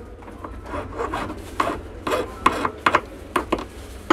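Short, irregular scratchy scraping strokes, about two or three a second, with a louder one at the end.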